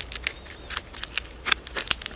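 Knife blade cutting and peeling the dry, papery husk of a young kapok fruit: an irregular run of short, crisp rasps and crackles, about eight in two seconds.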